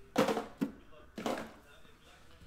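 A man's short spoken remarks, with a sharp knock about a fifth of a second in as an empty cardboard card box is tossed aside.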